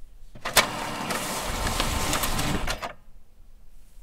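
Epson ES-580W sheet-fed document scanner feeding and scanning a page: a sharp click about half a second in, then roughly two and a half seconds of steady motor and feed-roller whirring that stops near the three-second mark.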